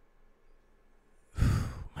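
A man's loud, breathy "whew", a sighing exhale, about a second and a half in, after low room tone.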